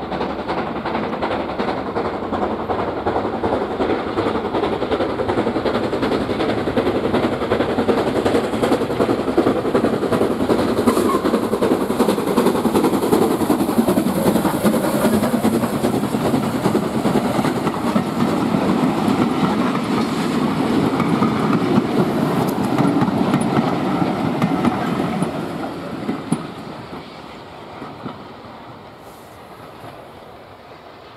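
WD Austerity 2-8-0 steam locomotive No. 90733 with its train running past close by. The noise builds to its loudest as the engine passes, then fades quickly in the last few seconds as it draws away.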